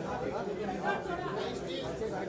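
Background chatter: several people talking at once in a large room, no single voice standing out.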